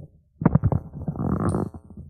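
A man's low voice speaking, with a brief pause a moment after the start.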